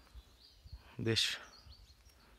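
Quiet woodland ambience with a low rumble and a few faint high chirps, broken by one short spoken word about a second in.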